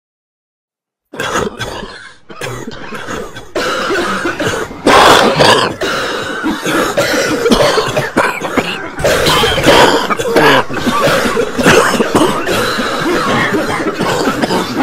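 A person coughing and clearing their throat loudly and almost without pause, starting suddenly about a second in.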